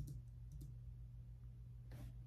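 A low steady hum with a few faint clicks, one near the start, two close together about half a second in, and one near the end.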